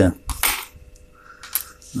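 A small part dropped onto a wooden tabletop: one short clatter about half a second in, then a fainter tick near the end.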